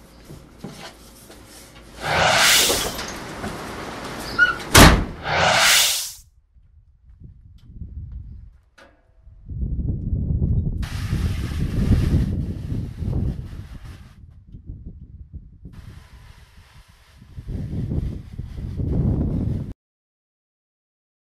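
A door sliding open and shut, with a sharp knock between the two, then stretches of low rumbling noise.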